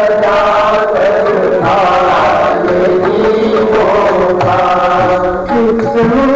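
Voices chanting a Hindu devotional hymn, a continuous sung melody of held notes, with musical accompaniment.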